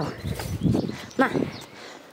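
A woman's voice speaking to the cubs, a few short words in Russian. Between her words, about half a second in, there is a short low rumble from the tiger and lion cubs feeding on meat.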